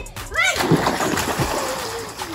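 A child jumping into a small plastic backyard pool: a loud splash about half a second in, then the water churning and spray falling back, slowly fading.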